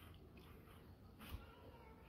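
A faint, brief high whine from a dog, heard over near silence.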